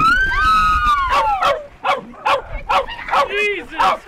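A person's long scream falling in pitch, then a French bulldog barking over and over in short, quick barks.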